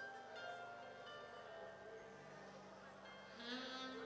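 Soft worship music with sustained tones, and a brief wavering sung note near the end.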